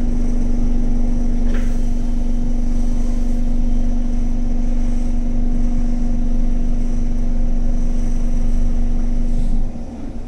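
Interior running noise of an SMRT Kawasaki C151 train car: a loud, steady low hum over wheel and track rumble, with a brief higher squeal about a second and a half in. Near the end the hum cuts out and the overall noise drops sharply.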